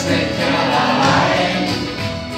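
Live band music with singing: a guitar with vocals, played on stage.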